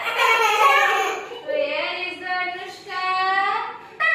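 Young children singing together, several voices, with long held notes.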